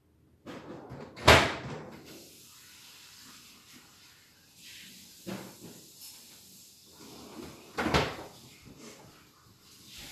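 Cabinets being opened and shut while someone searches through stored supplies: two sharp knocks, about a second in and again near eight seconds, with a softer one at about five seconds.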